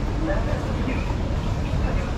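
Outdoor street ambience: a steady low rumble under faint, indistinct background voices.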